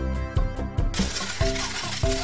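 Background music with a steady beat. About a second in, a dense clattering starts and keeps going: a cartoon sound effect of many small balls pouring into a tank.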